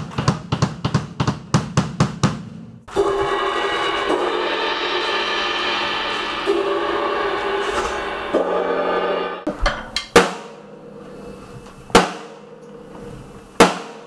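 Drum kit, a late-1960s Rogers Holiday with Sabian and Paiste cymbals, being played during a sound check. A quick run of drum strokes comes first, then several seconds of cymbals ringing, then three single drum strikes about two seconds apart, each leaving a ring.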